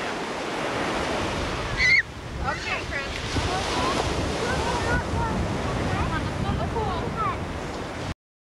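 Surf breaking on a beach, with wind buffeting the camcorder microphone. Just before two seconds in there is a brief high squeal and then a sudden dip in level, after which the surf goes on.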